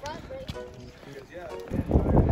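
Faint voices, then, near the end, wind buffeting the phone's microphone as the bicycle rolls down a paved path.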